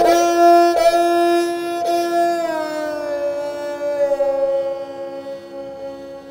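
Esraj, the bowed Indian string instrument, playing a slow aalap in Raag Puriya Dhanashri: a held note, re-bowed twice, then a slow downward slide onto a lower note that is held and fades.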